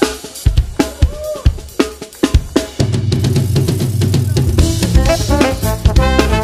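Live jazz band opening a tune: a few seconds of drum kit hits with electric guitar, then about three seconds in the full band comes in with a heavy bass line, and horns join near the end.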